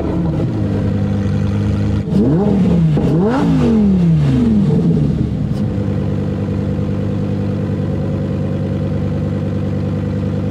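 Sports car engine idling, then revved twice in quick succession about two to four seconds in, the pitch rising and falling each time, before settling back to a steady idle.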